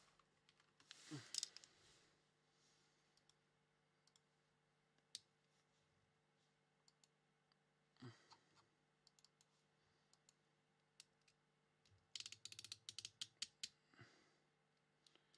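Near silence, with scattered faint clicks and a quick run of small clicks near the end.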